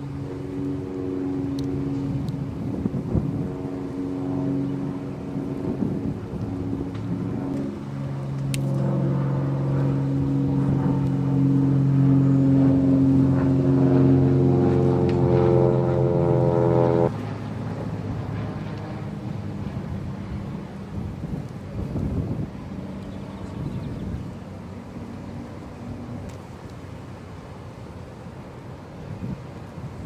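A motor vehicle's engine running close by, its pitch slowly rising and getting louder over the first half, then cutting off suddenly a little past halfway, leaving quieter outdoor background noise.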